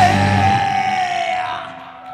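Heavy metal band ending a song: the full band with drums and bass cuts off about half a second in, leaving one high sustained note that dips slightly and then holds steady as the loudness falls away.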